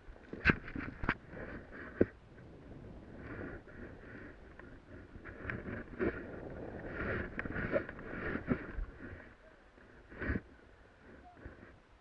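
Snow hissing and scraping under a rider sliding down an off-piste powder slope, coming and going unevenly as they turn. Several sharp knocks break through it, the loudest about half a second and a second in, with others near two seconds and about ten seconds in.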